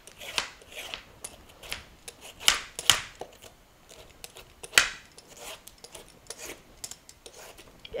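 Vegetable peeler scraping the last green rind off a peeled spaghetti squash: a run of short, irregular scraping strokes. The strongest come about half a second in, around two and a half and three seconds in, and near five seconds.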